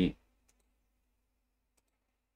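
Faint computer mouse clicks with near silence between them: one about half a second in, and two close together near the end, after the tail of a spoken word.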